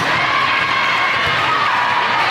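Crowd of spectators and players shouting and cheering in a gymnasium, a steady, loud wash of voices.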